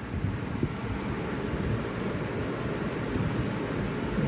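Steady low rumbling background noise with a few faint soft knocks.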